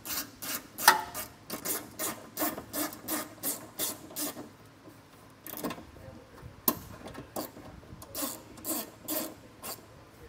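Hand ratchet turning a 7 mm nut on an exhaust heat shield, its pawl rasping with each back-and-forth swing of the handle. The strokes come about three a second, stop for about a second near the middle, then start again.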